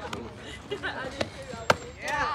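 A single sharp smack of a softball about two-thirds of the way through, with faint spectator voices around it.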